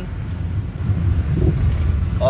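Low, steady rumble of the moving vehicle carrying the camera as it drives along a road.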